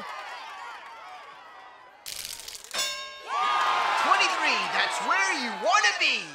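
Cartoon sound effects: a sudden crash-like burst about two seconds in, then a bright ringing ding, then several excited voices.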